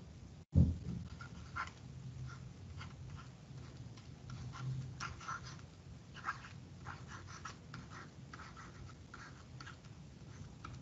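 Stylus scratching on a tablet as handwriting is written, in short irregular strokes over a low steady hum. A single loud thump comes about half a second in.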